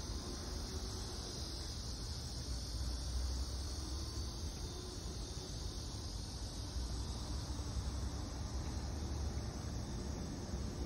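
Steady chorus of insects droning in the trees, over a low, steady rumble on the microphone.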